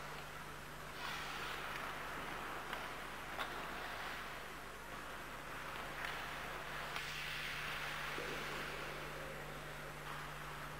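Ice skates scraping and carving on ice in swelling waves, with a few faint clicks of stick blade on puck, over a steady low hum.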